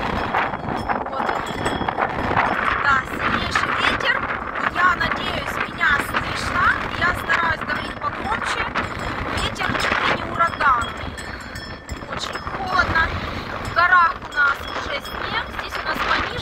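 Strong gusty wind buffeting the microphone, with scattered clicks and a series of short, high chirps repeated through the middle and near the end.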